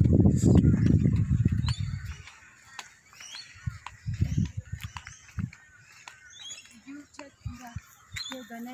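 Birds chirping, with a loud low rumble on the microphone for about the first two seconds, then a few soft low thumps.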